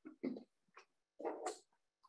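A few short, faint vocal sounds, each a fraction of a second long, spread across the two seconds.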